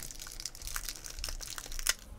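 A roll of masking tape being handled and unrolled: a run of small crackles and clicks, with a sharper click near the end.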